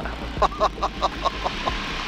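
A man laughing in a quick run of short 'ha' bursts, about five a second for over a second, over the steady drone of a light aircraft's engine in the cockpit.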